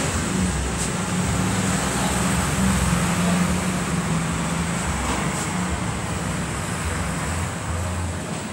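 Steady street traffic noise from the road below, with a shifting low rumble.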